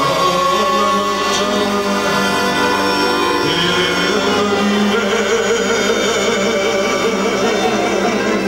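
Live Banat folk music of the slow 'ascultare' listening style: a man singing into a microphone over a band of clarinet, cimbalom and accordion, playing steadily.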